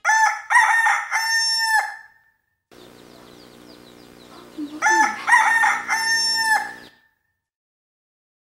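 A rooster crowing twice, about five seconds apart. Each crow lasts about two seconds and ends in a long held note that drops away at the end.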